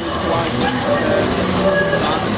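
Rail wheels squealing on the track: a run of steady high-pitched tones that shift in pitch, over city street noise.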